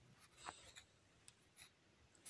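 Near silence, broken by a few faint ticks and scrapes of a ballpoint pen tip on a textbook page, the clearest about half a second in.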